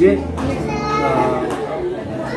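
Speech: voices talking in conversation, with no other distinct sound.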